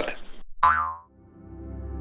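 A cartoon "boing" bounce sound effect about half a second in: a short tone that falls quickly in pitch. It is followed by soft background music with held chords that gradually get louder.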